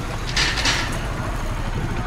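Motorcycle engine running steadily at low speed, with a brief hiss about half a second in.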